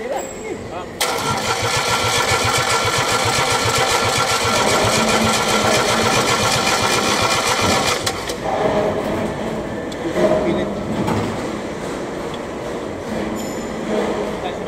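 Electric starter cranking an Isuzu 3AD1 three-cylinder diesel, a steady pulsing whir that begins suddenly about a second in and stops abruptly about seven seconds later, on an engine that is hard to start.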